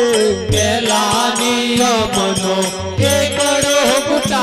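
Devotional bhajan music: harmonium holding steady notes under a wavering melodic line, with a regular beat of drum strokes and rattling percussion.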